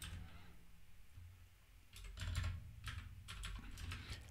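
Computer keyboard typing, faint: a few keystrokes near the start, then a quicker run of keys from about two seconds in.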